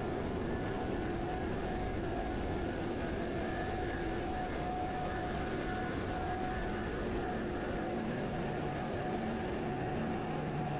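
Steady industrial plant noise: a constant low rumble with a few faint, steady humming tones from running machinery.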